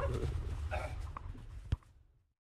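Low rumble of background noise with scattered faint knocks and a short sound about a third of the way in, fading down. Near the end comes one sharp click, and then the sound cuts off.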